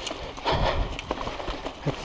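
Mountain bike rolling over a rooty, leaf-covered dirt trail: tyres crackling through dry leaves, with irregular knocks and rattles from the bike over bumps, loudest about half a second in.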